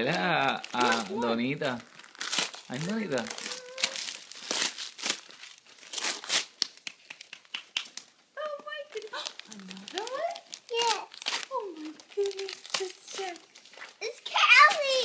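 Gift wrapping paper crinkling and tearing in a rapid run of crackles as presents are unwrapped, with children's voices calling out at the start and again in the second half.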